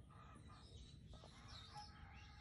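Near silence, with a few faint, short bird calls in the background.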